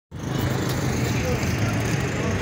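Murmur of a large outdoor crowd over a steady low rumble.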